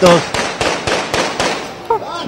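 A string of firecrackers going off in rapid succession, about eight to ten sharp cracks a second, growing fainter toward the end.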